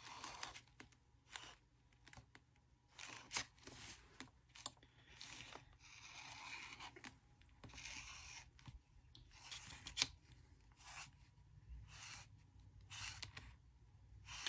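Faint, irregular dabbing and rubbing of a handheld applicator on a paper journal cover, applying sparkle: short scratchy dabs with a couple of longer rubbing stretches in the middle.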